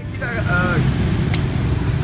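Street traffic noise, a steady low rumble of passing vehicles, with a person's voice briefly in the first second and a single sharp click partway through.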